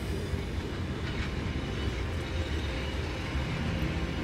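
Train running: a steady, loud rumble and rattle of wagons rolling on the track, with a short sharp click about a second in.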